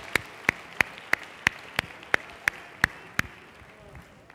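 Steady hand claps close to the microphone, about three a second, over softer audience applause that dies away. The claps stop about three seconds in.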